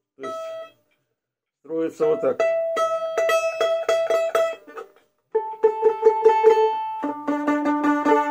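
Four-string domra plucked by hand: one short note, a pause of about a second, then runs of quickly repeated plucks on two pitches at a time, the pitches shifting a few times. The strings are being sounded against each other to check the tuning, which in this violin-like tuning in fifths puts the unison at the seventh fret.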